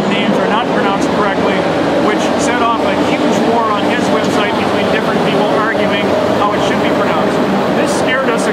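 A person speaking continuously.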